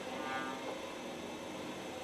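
Prepared string quartet playing soft, sustained bowed tones, with a short higher note standing out about a third of a second in.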